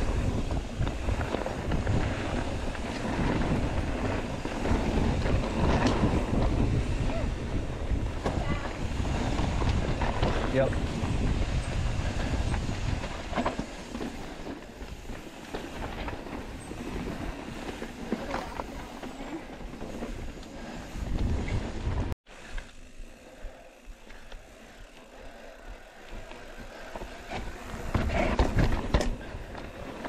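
Mountain bike riding over a rough, rocky trail: a steady rumble of tyres and knocks from the bike, with wind buffeting the microphone. The sound cuts off suddenly about two-thirds of the way through and then carries on more quietly.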